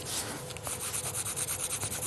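Colour pencil shading on paper: rapid, even back-and-forth strokes colouring in a pencil sketch.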